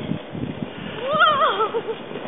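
A sled sliding down a snowy hill, hissing and bumping over the snow, with a rider letting out a high, wavering squeal about a second in.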